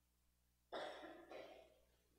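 A person coughing twice in quick succession, a little under a second in.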